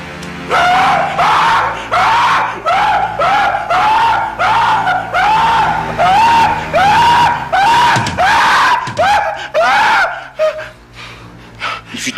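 A man screaming in pain as a flame is held to his face: a rapid run of short cries, each rising and falling in pitch, about two a second, stopping about ten seconds in. A background music score runs underneath.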